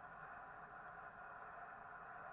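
Near silence: faint, steady room tone with a low background hiss.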